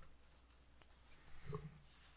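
Near silence: quiet room tone with a few faint clicks and one short, soft low sound about one and a half seconds in.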